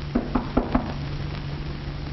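Four quick knocks on a wooden door, evenly spaced within the first second, heard over the steady hum and hiss of an old film soundtrack.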